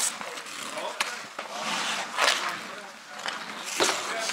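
Ice hockey skate blades scraping on rink ice: hissing scrapes at the start, about two seconds in and again near the end, with one sharp click of a stick on the puck about a second in.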